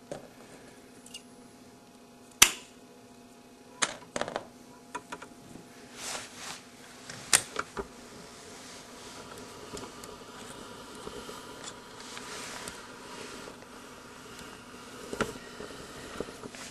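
A few sharp snips and clicks from cable splicer scissors cutting excess cable jacket and wire off an ethernet cable end, the loudest about two and a half seconds in, with scattered handling sounds in between.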